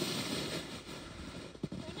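Steady hiss of sliding over groomed, packed snow. It fades over the first second and a half, with a short knock near the end.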